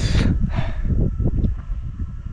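A loud, breathy exhale right at the start, then wind buffeting the microphone in irregular low gusts.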